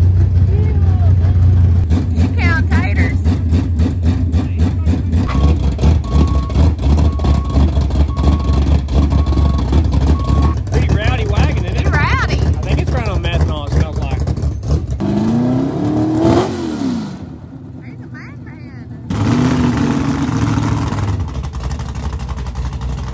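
Low rumble of a vehicle engine running, with voices in the background; about three quarters through, an engine revs up and back down. A short series of evenly spaced beeps sounds in the middle.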